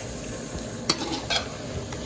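Chicken pieces frying in masala in a metal karahi, stirred with a metal ladle: a steady sizzle under the scrape of stirring, with a sharp clink of the ladle against the pot about a second in and a lighter one just after.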